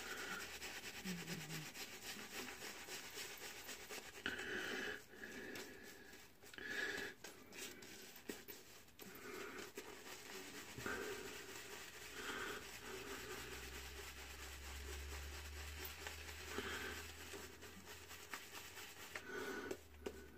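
Faint, irregular rubbing of a shaving brush working lather on a bearded face, with some breathing.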